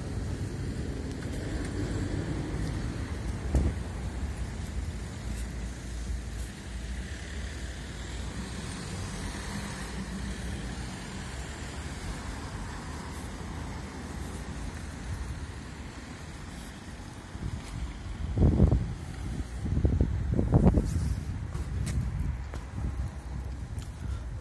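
Street traffic: cars running and passing on a city street, a steady low rumble with tyre hiss. Near the end come a few louder low bursts.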